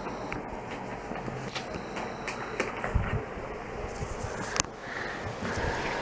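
Small dog mouthing and carrying a plush toy on carpet: scattered soft knocks and rustles over a steady background hiss, with one sharp knock about four and a half seconds in.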